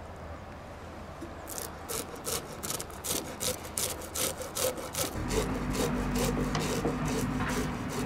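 Metal fish scaler scraping scales off a barbel, worked against the grain in quick rasping strokes about five a second, starting about a second and a half in. A low steady hum joins about halfway through.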